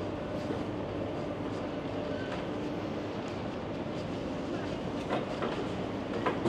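Pedestrian street ambience: a steady rumbling, rattling noise with scattered small clicks and faint passing voices.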